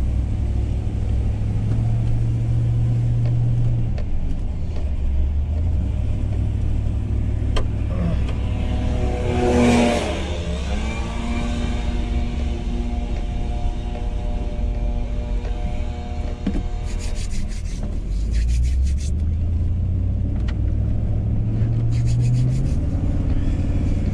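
Driving noise heard inside a pickup truck cab: a steady engine and road rumble that shifts in pitch with speed. About ten seconds in a large truck passes close alongside, louder for a moment and then falling in pitch, and later there are two short spells of rapid ticking.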